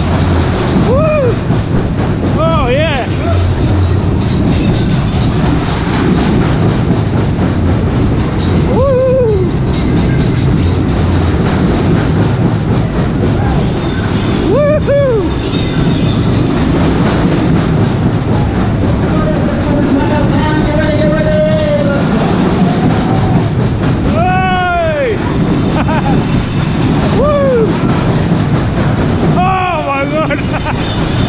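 Superbob fairground ride running at speed: a steady loud rumble of the cars going round the track, with music playing. Cries that rise and fall in pitch come several times.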